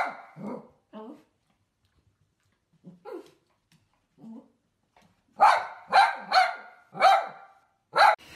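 Small dog barking: a few barks at the start, then a quieter stretch, then a quick run of four loud barks.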